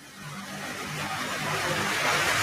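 Steady rush of falling water from the 9/11 Memorial reflecting-pool waterfalls, growing steadily louder.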